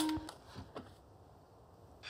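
The tail of a woman's spoken line in the first moment, then near silence: quiet room tone.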